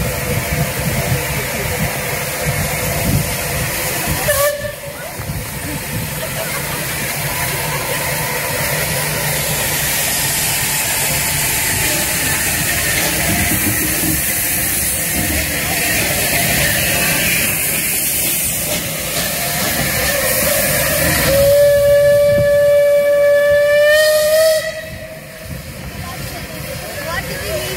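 Bulleid West Country class steam locomotive 34092 hissing steam as it stands close by. Near the end its steam whistle gives one blast of about three seconds, which rises slightly in pitch as it stops.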